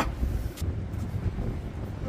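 Wind buffeting the microphone, heard as a low, uneven rumble, with a single faint click about half a second in.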